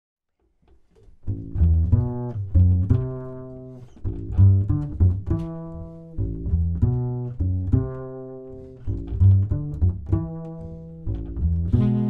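Solo upright double bass played pizzicato: a slow line of single low plucked notes, each ringing and fading, beginning about a second in.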